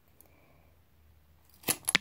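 Hand clippers snipping through a wooden craft stick: a couple of sharp snaps near the end, after a quiet stretch with one faint click.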